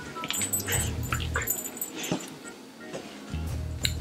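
A pet dog making a string of short high cries in the first second and a half, and another near the end.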